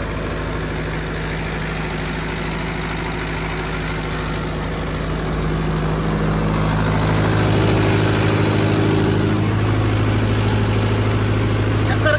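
Mahindra Yuvo 585 DI tractor's four-cylinder diesel engine running steadily; about halfway through, its note changes and it grows a little louder.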